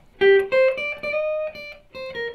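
PRS SE Santana Abraxas electric guitar played through a Fender Twin Reverb on a clean tone: a short single-note melody of a few picked notes, one of them held for about a second.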